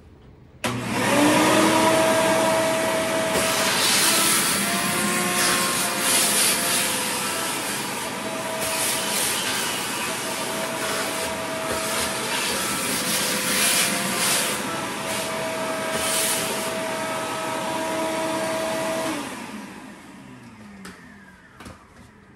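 A vacuum cleaner switched on about a second in and run over the bottom of an emptied kitchen drawer, its whine and rush of air shifting a little in pitch and loudness as the nozzle is moved. Near the end it switches off and winds down with a falling whine.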